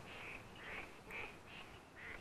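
Faint repeated animal calls, about two a second, over a low background hiss.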